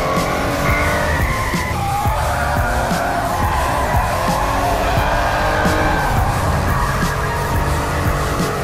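Hyundai iMax van with a turbo V6 engine, running hard at high revs while its tyres squeal through a sustained drift.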